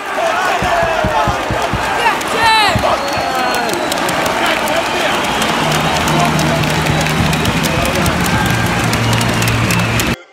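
Football stadium crowd cheering, shouting and clapping to celebrate a home goal, many voices rising and falling together. About halfway through a low held note joins in under the crowd.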